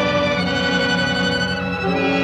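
Orchestral film score with strings holding sustained chords.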